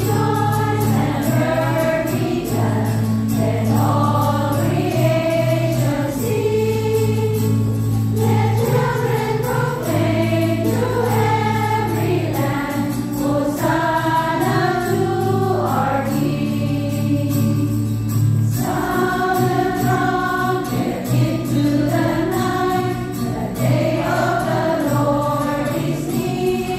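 A choir and congregation sing an English hymn together over instrumental accompaniment that holds long, steady low notes.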